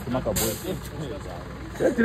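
People's voices talking over a steady low rumble, with a brief hiss about a third of a second in.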